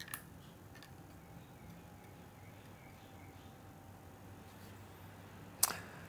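A small click as the power button of the FIMI Palm handheld gimbal camera is pressed, then a faint steady tone while the camera starts up. A brief louder noise comes near the end.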